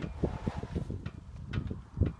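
Wind buffeting the microphone in an irregular low rumble, with a faint papery rustle in the first second as a large construction-paper template is handled.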